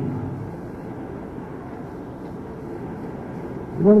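A pause in a man's talk from a stage: steady low background noise of the hall on a live concert recording, with no music playing. His voice comes back in near the end.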